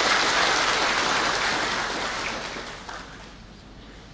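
Audience applauding, full at first and dying away over the last second or so.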